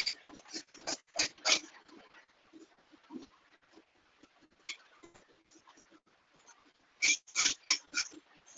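Short, sharp animal calls in quick runs, a few near the start and a louder cluster of about four near the end, with fainter ones between.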